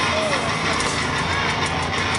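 Heavy metal band playing live at full volume, a dense, unbroken wall of guitars and drums, heard from among the audience.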